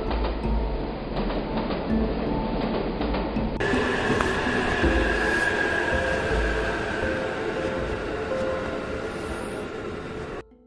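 Passenger train coaches rolling past along a platform: a steady low rumble of wheels on the rails. About three and a half seconds in the sound cuts to a station platform, where a steady high whine sits over the rumble.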